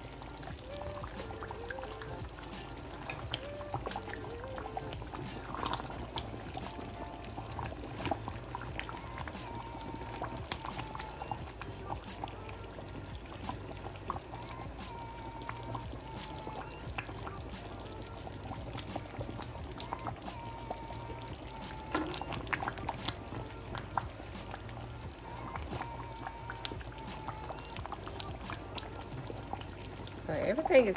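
A skillet of simmering gravy, thickened with cornstarch slurry, being stirred with a metal spoon: wet bubbling and sloshing, with occasional clicks of the spoon against the pan.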